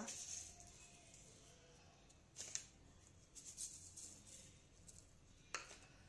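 Near silence with a few faint clicks, from cumin seeds being added to flour in a steel plate: one about two and a half seconds in, a few in the middle, and one near the end.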